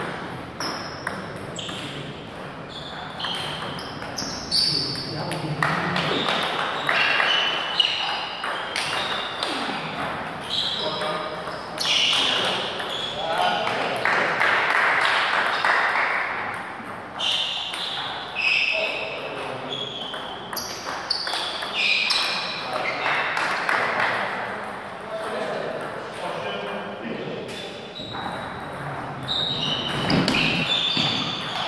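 Table tennis ball clicking on rubber-faced paddles and the table during rallies, each hit with a short high ping, in a large hall, with voices talking in between.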